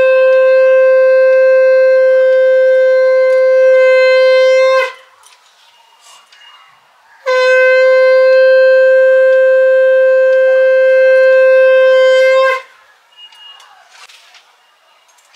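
Conch shell (shankha) blown in two long, steady, loud blasts of about five seconds each, on one held note, about two seconds apart. Blowing the conch marks the auspicious moment of a Hindu rite, here the sister marking her brother's forehead at Bhai Phota.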